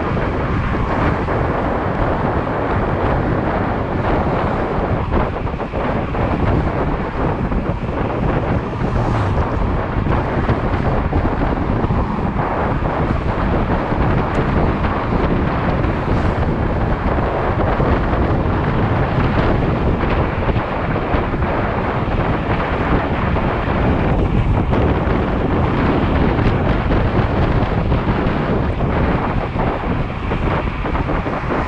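Loud, steady wind noise buffeting the microphone as an electric scooter is ridden at road speed.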